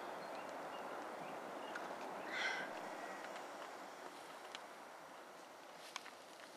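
Faint outdoor ambience: a soft, steady hiss that slowly fades, with one brief, higher-pitched sound about two and a half seconds in.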